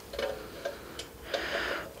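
Pliers turning the nut of a cable jack on a spring reverb tank's metal case: a few light metallic clicks as the jaws grip and slip, and a short scrape near the end.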